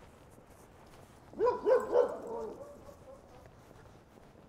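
A small dog barking three quick times, about a second and a half in.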